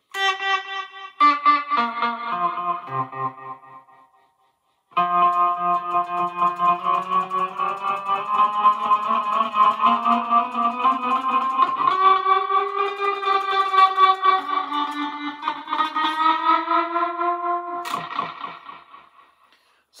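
Electric guitar played through a Wampler Faux Spring Reverb pedal, with a Tech 21 Fly Rig 5's delay switched on, into a Fender Mustang I amp. A few chords ring and fade, there is a brief pause about four seconds in, and then a long sustained chord passage with a fast pulsing repeat changes chord twice before fading out near the end.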